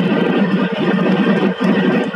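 A fishing trawler's engine and net winch running with a loud, steady drone while the full net is hoisted aboard over the stern.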